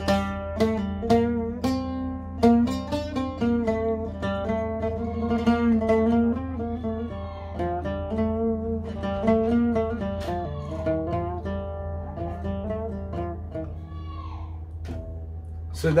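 Oud played with a plectrum: a short Persian-style melody of plucked notes, with quick repeated tremolo (riz) strokes on held notes.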